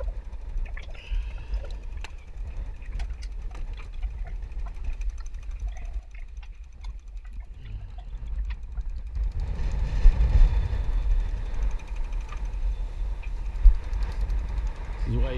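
Strong gale wind buffeting the microphone as a steady low rumble, with scattered clicks and knocks of a safety tether's carabiner and webbing being handled. The wind and sea noise swell about nine seconds in, and a sharp knock comes near the end.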